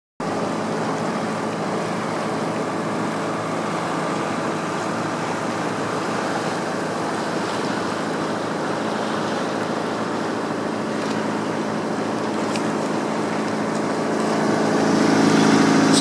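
A motor boat's inboard engine running steadily under way, mixed with a broad wash of water noise. The sound grows somewhat louder near the end.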